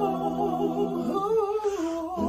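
Unaccompanied singing: a long held note, then a move to higher notes with vibrato about halfway through.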